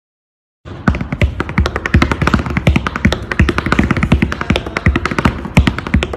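Metal taps on tap shoes striking a hard floor in a quick, uneven run of sharp clicks, some with a short metallic ring. The run begins about half a second in.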